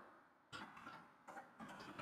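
Faint computer keyboard typing: a run of irregular keystroke clicks starting about half a second in.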